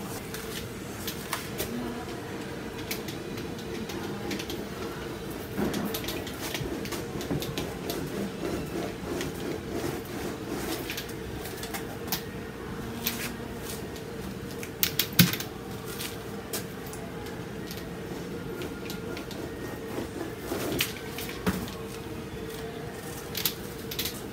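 Scattered light clicks and taps from painting tools and paint being handled while acrylic is worked onto a textured canvas, with one sharper knock about 15 seconds in, over a steady low hum.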